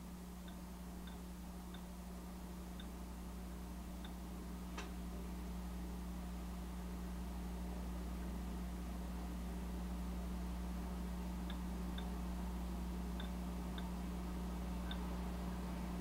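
Steady low electrical mains hum, with a few faint ticks scattered irregularly through it.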